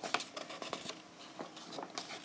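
Paper pages of a colouring book being turned by hand: a quick run of paper rustles and crackles in the first second, then a few softer brushes of paper against the fingers.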